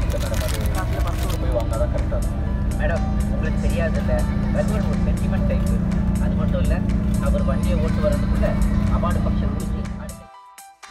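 Cabin noise of a moving BharatBenz A/C sleeper bus: a steady low engine and road rumble with a hum. Music with singing plays over it.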